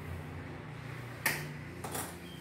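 Two sharp clicks from fitting a small air filter onto a mini bike's carburettor, the louder a little past halfway and a weaker one near the end, over a steady low hum.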